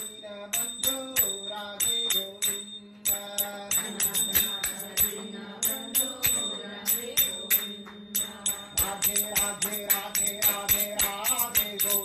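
Devotional music: a fast, steady beat of jingling metal percussion under sung or chanted melody.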